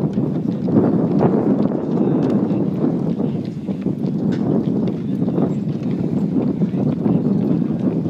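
A horse cantering on sand arena footing, its muffled hoofbeats under a steady rush of wind on the microphone.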